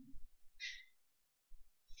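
A pause in speech: a short, low hum-like 'mm' from a voice at the start, a brief breathy hiss about half a second in, then near silence.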